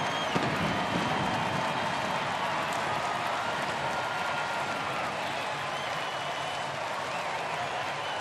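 Ballpark crowd cheering and applauding a home run, a steady wash of clapping and voices.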